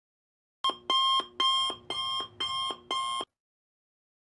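An electronic alarm beeping: about six evenly spaced beeps, roughly two a second, starting just under a second in and stopping a little after three seconds.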